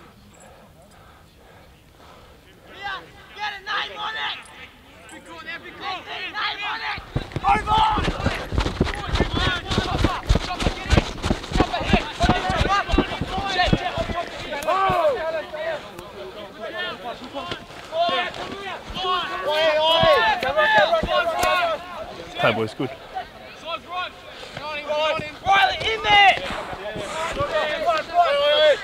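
Indistinct shouting of rugby players calling to each other during open play, a number of voices overlapping. From about seven seconds in, rough crackling noise runs under the voices.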